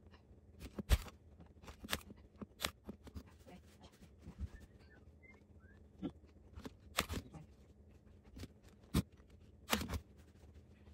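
Upholstery fabric being handled, rustling as it is pulled and tucked around a chair seat pad, with scattered sharp knocks and clicks, the loudest about a second in.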